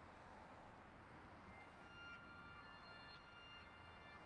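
Near silence: a faint steady hiss, with a few faint high steady tones coming in about a second and a half in.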